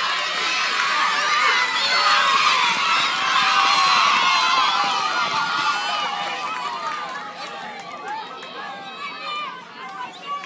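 Many children's voices shouting and cheering at once, with no single speaker standing out. The shouting swells in the first half and dies down over the last few seconds.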